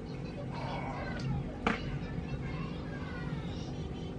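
Soft background music with a cat meowing over it in short gliding calls. A single sharp click comes a little under halfway through.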